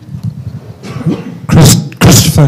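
A man clears his throat with a short, loud cough into a microphone about one and a half seconds in.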